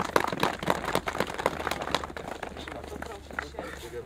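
Audience applauding, densest in the first two seconds and then thinning out.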